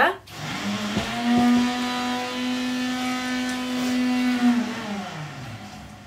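A motor vehicle engine comes in about a second in, its pitch rising and then holding steady. Near the end the pitch drops and the sound fades away, as a vehicle does when it passes by. A short knock sounds at the very start.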